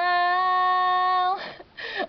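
A girl singing unaccompanied, holding one steady note on the word "smile" for about a second and a half, then a short breath.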